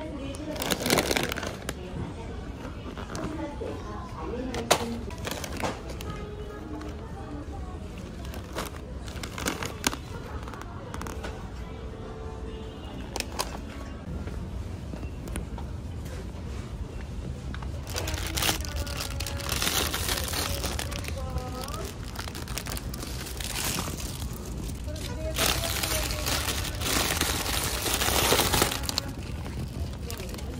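Supermarket background sound under music: a steady low hum with voices, scattered clicks and the crinkle of plastic snack packaging.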